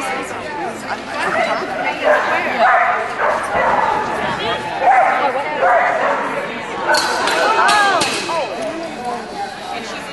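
A dog barking repeatedly in short, pitched barks, over background chatter from people.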